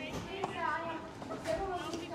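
Indistinct talking, fainter than the nearby speech either side.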